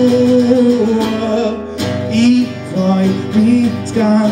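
A man singing over a strummed acoustic guitar, holding long notes in a live song.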